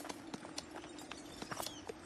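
Soft, irregular clip-clop of hooves: a camel and a donkey walking, as cartoon foley, over a faint steady hum.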